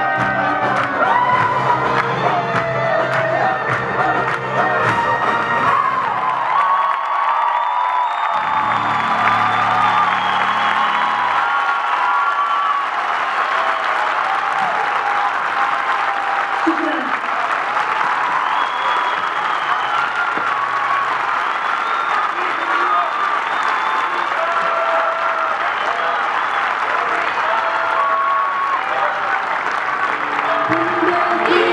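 Live band music with a large audience clapping and cheering. The bass-heavy music drops out about twelve seconds in, leaving mostly steady applause and cheering with lighter music underneath.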